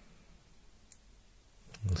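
Faint room tone with a single short, faint click about a second in.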